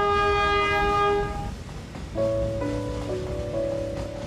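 A steam locomotive's whistle blowing one steady note that fades out about a second and a half in. It is followed by soft, sustained musical notes.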